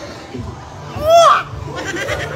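One short, loud goat-like bleat that rises and then falls in pitch, about a second in.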